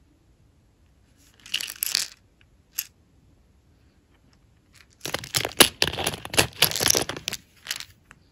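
Clear plastic compartment storage case being handled, with small nail charms rattling and clicking inside it. There is a short burst of rattling about a second and a half in and a single click, then a longer stretch of dense clicking and rattling from about five seconds in.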